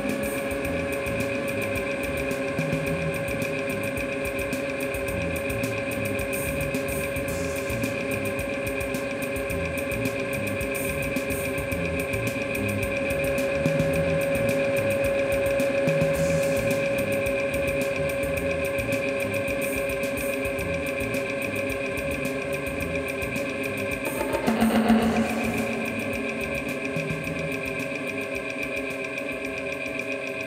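Live instrumental drone music: layered sustained tones held over a fast, even pulsing texture. The sound swells in the middle, and a brief louder burst comes about 25 seconds in.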